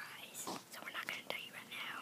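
A child whispering in short breathy bursts, close to the microphone.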